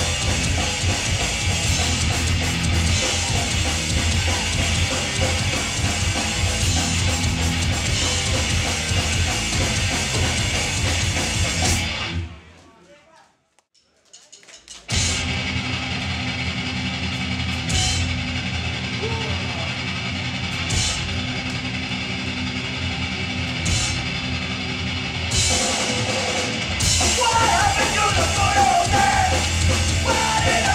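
Hardcore punk band playing live at full volume, with drum kit, distorted guitars and bass. About twelve seconds in the song cuts off and there are a couple of seconds of near silence. Then comes a quieter stretch of steady amplifier hum and crowd noise between songs, and near the end shouted vocals come in as the next song starts.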